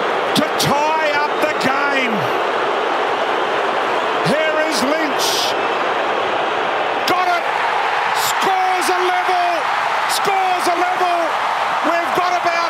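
Large Australian rules football stadium crowd making a loud, steady roar, with individual shouts and calls standing out over it and a few sharp claps or bangs.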